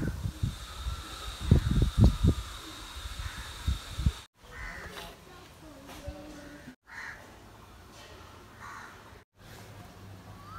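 Outdoor ambience over a few short clips: low rumbling thumps for the first four seconds, then crows cawing a few times, one short call at a time.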